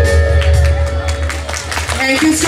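Live instrumental music from a student ensemble of electronic keyboards, violin and hand drums, with a steady low drone under held tones and a run of drum strokes.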